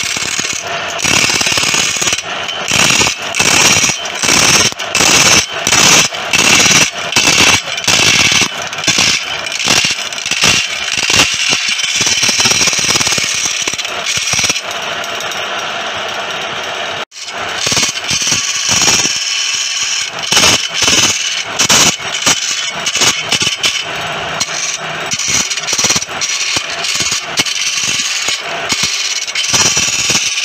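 Wood lathe spinning a palm-wood blank while a hand-held flat chisel cuts into it: a loud scraping rasp that comes and goes in repeated strokes as the tool is worked along the piece, with a brief break a little past halfway.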